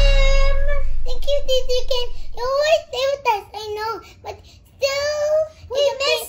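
A young girl singing in a sing-song voice, with long held notes at the start and again about five seconds in, broken by short quick phrases. Electronic dance music underneath fades out in the first couple of seconds.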